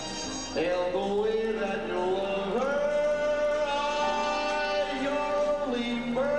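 Male crooner singing a saloon ballad into a hand microphone, with musical accompaniment behind him. He comes in about half a second in and holds one long note through most of the second half.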